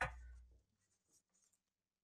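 A short rustle with a dull low thud under it at the very start, fading within about half a second. A few faint small clicks and rustles follow, typical of handling near a microphone.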